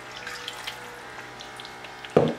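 Water poured from a glass into a pan of thick, hot curry sauce: a steady pour with small scattered crackles.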